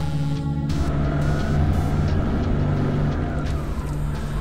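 A jeep driving, its engine and road noise swelling in about a second in, over sustained background film music.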